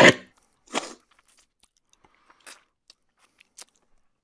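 Close-miked chewing of a mouthful of food: two loud wet mouth sounds in the first second, the first the loudest, then faint smacks and clicks.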